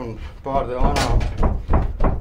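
A man talking while his hands pat and press soft bread dough on a floured wooden table, giving a few dull slaps and thumps.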